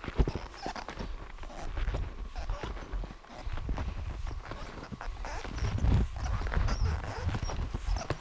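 Footsteps crunching through packed snow, a steady run of short strikes, over a low rumble on the microphone that swells about two-thirds of the way in.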